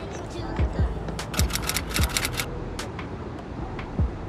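Background music with a steady beat: a deep kick drum a little under twice a second, with hi-hat ticks over it.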